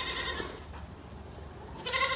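Goats bleating in the background, faintly: one call right at the start and another beginning near the end.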